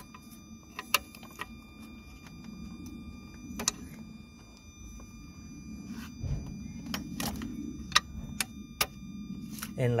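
Scattered metal clicks and taps as a compression tester's threaded adapter hose is worked into a glow plug hole among the injector pipes of a diesel engine, over a low steady hum.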